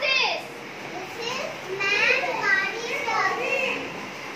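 Young children's voices, high-pitched and talking in short bursts.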